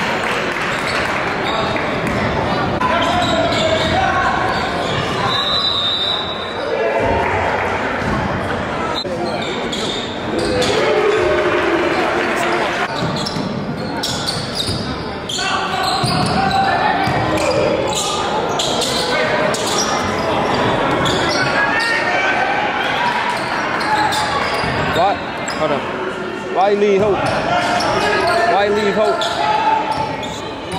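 Basketball game sounds in a school gymnasium: a ball dribbled on the hardwood court, with the crowd's and players' voices echoing around the hall.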